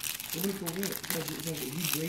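Crinkly candy wrapper being handled and pulled at, making irregular crinkling.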